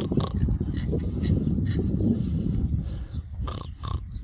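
Pigs grunting low and almost continuously while grazing with their snouts in the grass.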